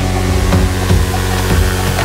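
Progressive house dance music from a DJ mix: a steady four-on-the-floor kick drum over deep sustained bass and synth tones. A hissing white-noise wash sits over the top and cuts off suddenly at the end.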